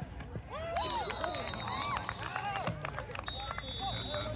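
Spectators shouting and cheering during a football play, many voices overlapping. A referee's whistle is blown twice, each blast about a second long: once about a second in and again near the end.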